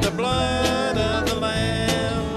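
Country gospel band playing live: electric bass and a drum kit keeping a steady beat with guitar, and a man singing over it.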